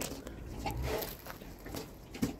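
A pregnant Large White × Landrace sow feeding from her bowl: faint, scattered clicks and soft chewing noises.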